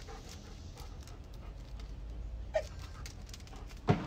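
A dog gives one short falling whine about two and a half seconds in, over a steady low rumble, with a sharp click just before the end.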